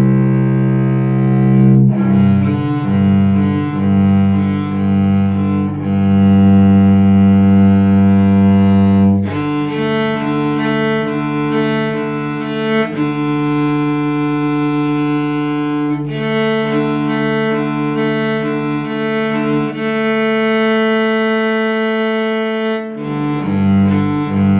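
Solo cello bowed through a slow method exercise of slurred eighth notes and long held notes, each note sustained and changing in steps. The first nine seconds or so stay low, then the line moves higher, with a few longer held notes later on.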